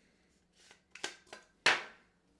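A few light plastic clicks as a lens hood is worked off a telephoto lens, then a louder sharp knock near the end as the hood is set down on the desk.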